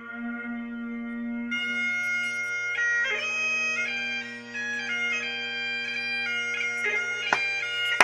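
Bagpipes playing for the piping-in of the haggis. The steady drones sound throughout, and the chanter's melody comes in over them about a second and a half in.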